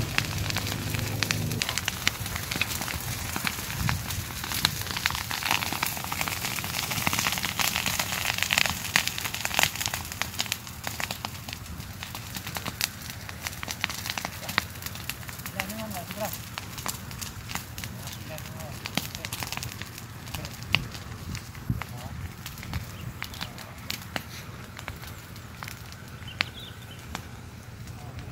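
Dry grass and brush burning in a spreading field fire: dense, irregular crackling and popping, loudest in the first ten seconds or so, then fainter.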